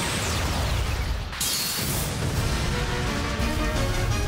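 Cartoon battle sound effects of spinning tops clashing: a crash with a falling swoosh, then a second burst about a second and a half in, over dramatic soundtrack music that settles into held notes.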